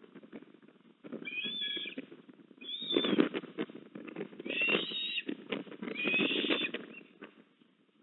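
Eastern ospreys calling at the nest while the chicks are being fed: four short bouts of high, thin whistled chirps. They sound over a low, uneven rushing noise with scattered clicks.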